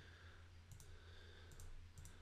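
Near silence over a low steady hum, with two pairs of faint computer mouse clicks, about a second apart.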